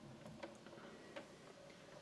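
Near silence with a few faint, irregular ticks and clicks from a small display turntable as it rotates a statue.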